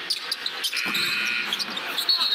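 Basketball game in play on a hardwood court: a high sneaker squeak lasting about a second near the middle, and a few sharp knocks of the ball, over steady arena crowd noise.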